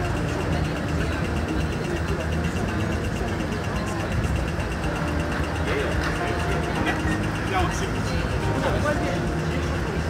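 City street traffic with a heavy vehicle's engine running at low revs, and the voices of passers-by.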